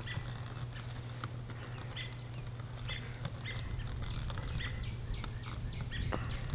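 Steady low hum of a honey bee colony over an open hive, with a scatter of short, high ticks and chirps that come more often in the second half.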